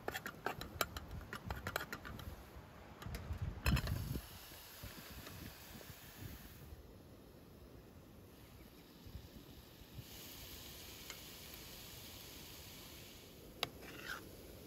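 Knife tapping on a plastic cutting board as garlic is chopped: a quick run of sharp clicks that ends with a louder cluster about four seconds in. After that, a faint steady hiss of sweet potato and carrots frying in a skillet on a camp stove.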